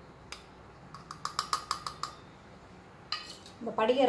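A small stainless steel plate tapped repeatedly against the rim of a glass jar to knock powder into it: a single click, then a quick run of about eight ringing metallic clinks, and a last knock near the end.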